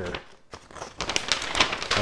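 A large folded paper instruction sheet being unfolded: paper rustling and crinkling, growing louder about a second in.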